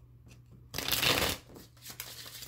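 A deck of cards being shuffled by hand: a loud half-second flurry of cards about the middle, then softer shuffling.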